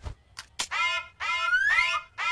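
A wordless cartoon voice sound, held on one pitch for about a second and then gliding upward near the end, after a couple of short clicks.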